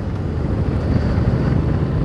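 Yamaha Tracer 7's 689 cc CP2 parallel-twin engine pulling the bike up through the low speeds, slowly getting a little louder, mixed with wind and road noise.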